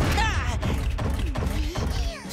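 Cartoon sound effects of a boulder being dragged by rescue vehicles on ropes: a continuous low rumble with knocks and crashing rock. Short strained voice sounds come near the start and again in the middle.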